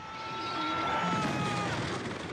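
Film soundtrack of a Dennis fire engine toppling onto its side: a rush of noise that swells to a peak about a second in and then fades. Two steady tones are held underneath until near the end.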